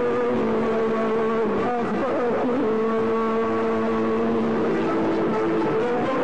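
Live orchestral accompaniment with a violin section, playing long sustained notes. Wavering, ornamented melodic turns come about two seconds in, in the style of a Kurdish maqam performance.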